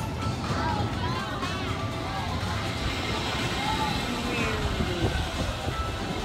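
Outdoor amusement-park ambience heard from a Ferris wheel gondola: a steady low rumble, with faint distant voices and music.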